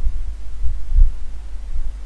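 Low steady rumble with a few soft irregular thumps, the strongest about a second in.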